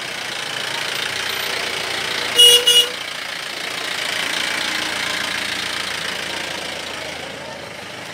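Two short vehicle-horn honks in quick succession about two and a half seconds in, over a steady wash of outdoor street noise.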